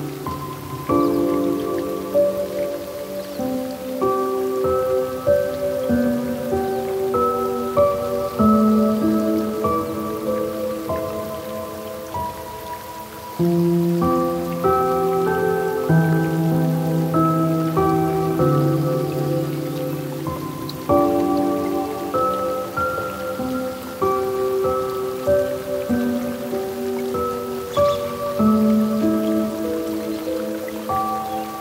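Slow, gentle piano music: soft single notes and chords each held for a second or two, with a faint steady hiss underneath.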